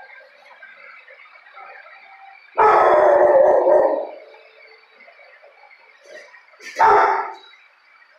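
Dogs barking and howling in a shelter kennel block: faint barking runs throughout, with one loud, drawn-out bark or howl lasting over a second about two and a half seconds in and a shorter loud one near the end.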